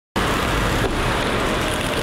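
Steady road traffic noise from passing cars, starting abruptly just after the beginning.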